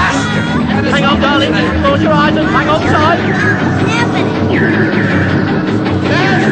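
Several voices shouting and shrieking over one another, wordless and overlapping, over a low rumble. About four and a half seconds in, a long high wail starts and holds.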